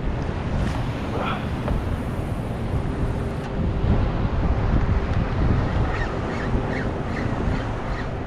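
Wind buffeting the microphone, with choppy salt water lapping around a kayak.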